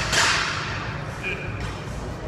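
A sudden sharp hissing burst at the very start that fades within about half a second, over steady low gym background noise.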